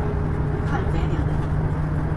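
Steady low rumble with a constant low hum, heard in a pause between guitar notes.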